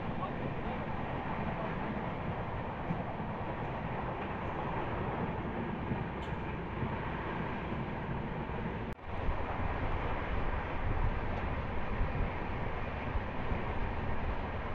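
Running noise of a moving passenger train heard from an open coach doorway: a steady rumble of wheels on rail with rushing air. A brief dropout comes about nine seconds in, after which the low rumble is louder.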